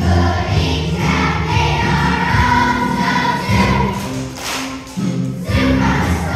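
A class of second-grade children singing together as a choir over music, with a brief break between phrases about five seconds in.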